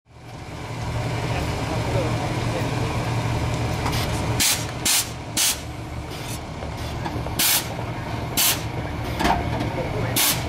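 Air ride suspension on a 1966 Cadillac DeVille letting air out of its bags in short hissing bursts, about five in four seconds, as the car is lowered. A steady low hum runs underneath.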